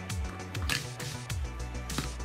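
Plastic magnetic building blocks clicking and rustling in the hands as a triangle piece is fitted onto the build, a few short clicks with a louder one about a second in, over steady background music.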